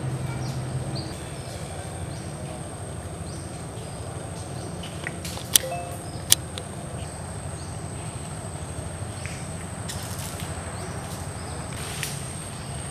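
Outdoor ambience: a steady low rumble under a thin, steady high-pitched whine, with scattered light ticks and two sharp clicks a little under a second apart about halfway through.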